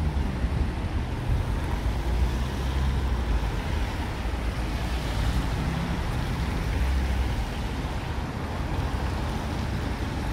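Steady outdoor background noise: an even hiss over a low rumble that swells and fades.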